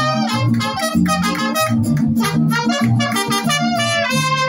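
Mariachi band playing a song's instrumental introduction: trumpet melody over strummed guitars and a guitarrón's pulsing bass notes.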